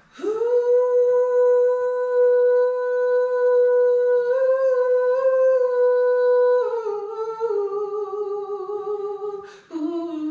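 A woman singing a background vocal on an open 'ooh' vowel, unaccompanied: one long steady note that lifts slightly in the middle, then steps down in pitch in small stages. After a quick breath near the end she comes back in on a lower note with vibrato.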